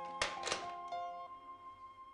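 Corded desk telephone handset hung up on its cradle: two knocks in quick succession near the start, over held notes of background music.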